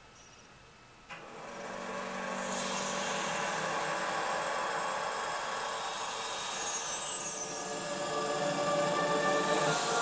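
After about a second of near silence, a TV channel ident's soundtrack comes in: a sustained wash of many held tones under a rushing hiss, building and growing louder toward the end.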